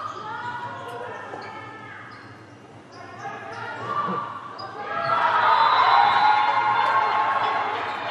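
Volleyball rally in a sports hall: the ball is struck and players call out, with a thud about four seconds in. About five seconds in, loud shouting and cheering from the players breaks out as the point is won.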